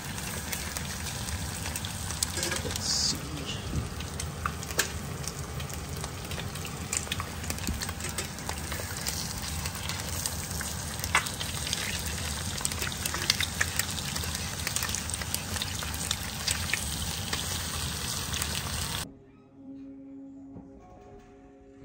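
Several eggs frying in a pan, a steady sizzle full of small crackles and pops. The sizzle cuts off suddenly about a second before the end.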